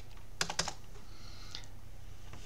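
Computer keyboard keystrokes: a quick run of three key presses about half a second in, then one more a second later, as the Enter key adds blank lines in a code editor.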